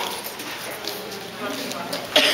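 Indistinct background talk from people in a room, with a few light clicks.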